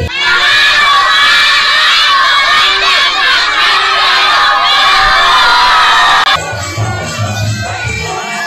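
A large group of children shouting and cheering together, loud and continuous, cutting off suddenly about six seconds in. Band music with a drum beat follows.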